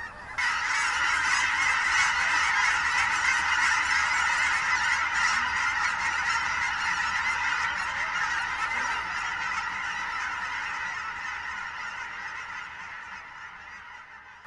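A large flock of birds calling together in a dense, continuous chorus as it flies over. The chorus starts suddenly about half a second in and grows steadily fainter as the flock moves off.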